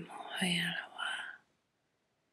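A woman vocalizing wordless syllables in a soft, whisper-like voice, stopping abruptly about one and a half seconds in.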